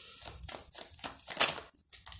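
A tarot deck shuffled by hand: a quick, irregular run of soft card slaps and clicks, loudest about one and a half seconds in.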